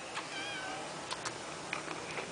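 A kitten gives one short, faint, high meow about half a second in, followed by a few light clicks.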